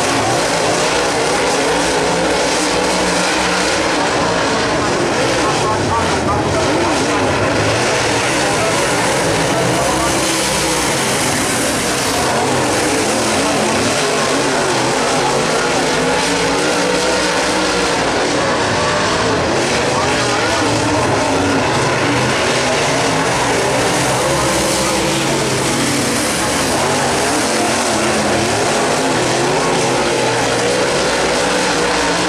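Dirt late model race cars' V8 engines at racing speed on a dirt oval, a loud continuous engine sound whose pitch keeps rising and falling as the cars throttle through the turns.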